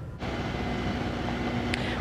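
Steady outdoor street ambience with a low background hum, picked up by a live field microphone; it comes in a moment after a brief drop-out, and a short click sounds near the end.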